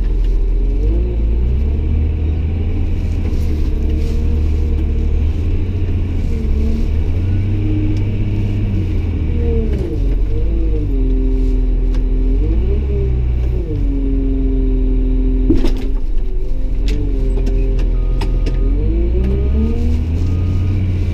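Caterpillar 966H wheel loader's diesel engine heard from inside the cab, its pitch rising and falling several times as the throttle is worked while driving. A single knock comes about three-quarters of the way through, and near the end a row of short, evenly spaced beeps starts: the reversing alarm as the machine goes into reverse.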